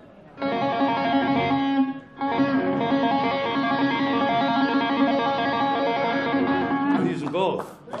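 Electric guitar played through an EVH 5150 amp as a tapping demonstration: sustained, ringing hammer-on and pull-off notes made so that it is hard to hear which hand frets them. There are two phrases with a short break about two seconds in, and the playing stops a second before the end.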